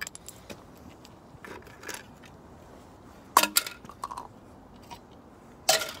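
Loose broken parts of a smashed Yonanas dessert maker clinking and clattering as they are picked up and gathered together: a few light clicks, then two louder clatters, about three and a half seconds in and near the end.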